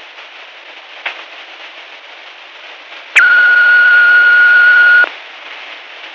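Answering machine beep: one loud, steady high tone lasting about two seconds, starting about three seconds in. Before and after it, the steady hiss of a worn cassette tape copy, with a faint click about a second in.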